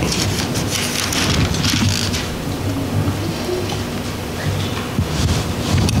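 Bible pages rustling as they are turned to a new passage, a continuous dense papery crackle.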